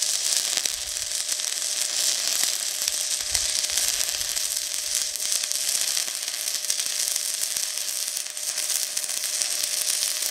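An E6010 stick electrode arc welding steel on DC: a steady, crackling hiss with fine crackles throughout.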